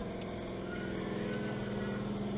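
A steady low machine hum made of several even tones, unchanging in level, like a motor running in the background.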